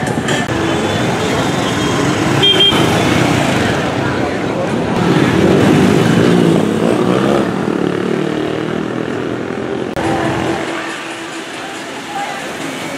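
Street traffic: motorbikes passing close by, the loudest going past about five to seven seconds in, with a short horn toot about two and a half seconds in.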